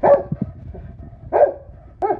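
Golden retriever barking twice: one short bark at the start and a second about a second and a half later.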